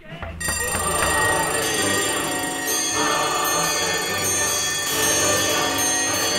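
Alarm clock ringing: a loud, continuous bell ring that starts suddenly just after the start.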